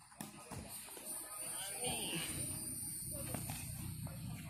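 Faint, indistinct voices over a low, steady rumble of road traffic that builds about halfway through, with a few soft knocks in the first second.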